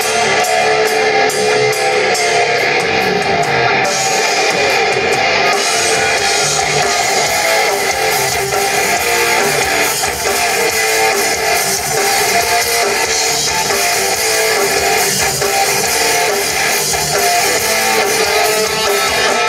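Live rock band playing an instrumental passage with no vocals: electric guitars, bass guitar and drums, loud and steady.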